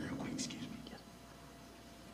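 Faint, indistinct speech, with a sharp 's'-like hiss about half a second in, trailing off to quiet room tone in the second half.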